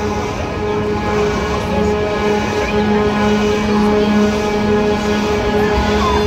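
Spinning amusement ride running at slow speed as its cars circle past, with a steady mechanical hum from its drive under music.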